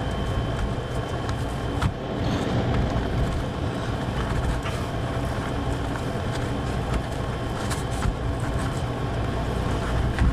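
Steady whir of a running fan with a low hum underneath, and a few faint clicks of a knife against a paper plate.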